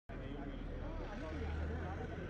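Voices talking over a vehicle engine running close by, its low hum growing louder in the second half; a brief break in the sound at the very start.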